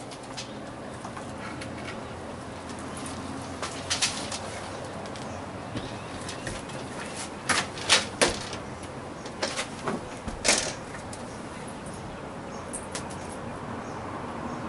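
Scattered sharp clacks and knocks of a metal screen-door side profile being handled and set against a door frame, over a steady background hiss. Most of the knocks come in a cluster through the middle.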